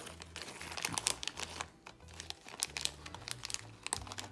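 Small clear plastic zip-lock bag crinkling and crackling as fingers open it and handle it, a run of quick irregular crackles and ticks.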